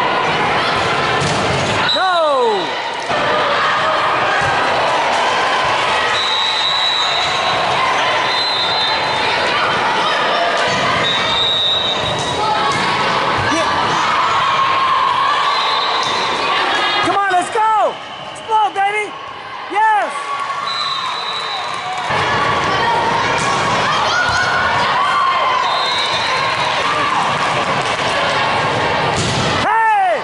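Indoor volleyball rally in a large gym: a steady hubbub of spectator voices, with thuds of the ball being hit and short squeaks from sneakers on the hardwood court.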